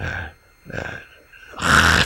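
A man's voice through a headset microphone: brief hesitant vocal sounds, then near the end a loud, rasping, breathy vocal sound that runs straight into speech.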